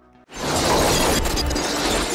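Film sound effects with score: after a brief silence, a sudden dense rush of noise sets in and holds steady, with music underneath.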